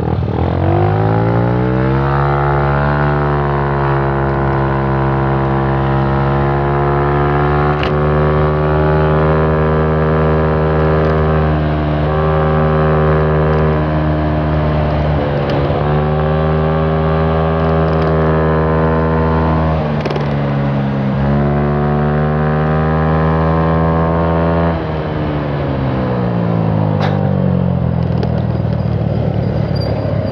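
Scooter engine speeding up over the first two seconds, rising in pitch, then running at a steady cruising speed with a few brief dips. About 25 seconds in, the throttle is eased off and the engine note falls away.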